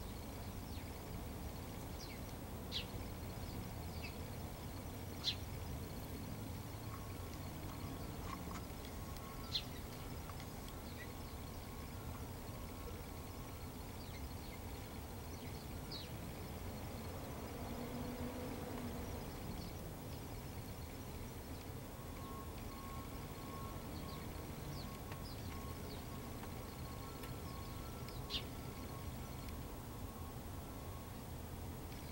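Outdoor background: a steady low rumble with a handful of short, high bird chirps scattered through it. The chirps are a few seconds apart.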